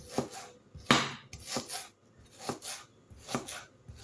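Large kitchen knife chopping an onion on a wooden chopping board: about five separate strokes, a little under one a second, the loudest about a second in.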